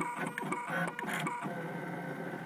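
Gravograph IM4 engraving machine running a diamond drag engraving job on anodized aluminum. Its motors drive the head through a quick, stuttering run of short whirs that settles into a steadier whine about a second and a half in.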